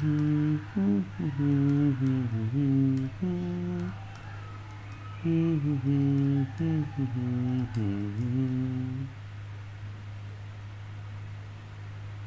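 A man humming a tune to himself in two phrases of sustained, stepping notes. The second phrase starts about five seconds in and ends about nine seconds in. A steady low electrical hum runs underneath.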